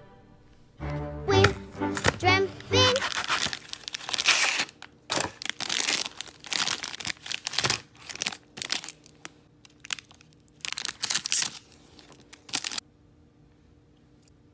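A short wavering, voice-like pitched sound, then a long run of irregular crinkling and crackling as a plastic snack sleeve is handled and torn open. The crinkling cuts off abruptly near the end.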